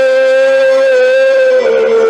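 Live band music over a concert PA with the drums stopped: one loud held note that dips slightly in pitch and then steps down to a lower note near the end.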